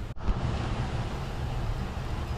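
Steady wind rumble on an action-camera microphone, a low even noise with no distinct events.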